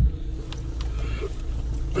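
A car driving slowly on a dirt track, heard from inside the cabin: a steady low engine and road rumble, with a brief thump right at the start.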